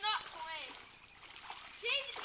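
Children splashing about in a shallow puddle of muddy water, with high children's shouts in the first half second and again near the end.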